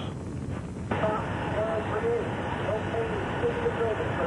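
A steady rushing noise sets in about a second in, with faint distant voices calling beneath it.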